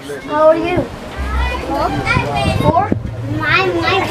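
Children's high-pitched voices calling and chattering as they play, with a low rumble on the microphone about a second in and again near the end.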